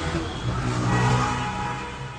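A vehicle engine sound with a steady low hum that swells for about a second and then fades.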